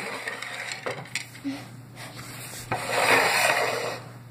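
Light handling clicks and taps as a jelly bean is picked up, then about a second of rushing breath noise near the end as the bean is sniffed up close.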